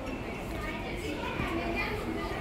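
Indistinct voices and children's chatter over the steady background hum of a shopping centre.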